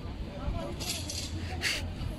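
Busy street ambience: indistinct voices of passers-by over a steady low traffic rumble, with two brief hissing bursts near the middle and end.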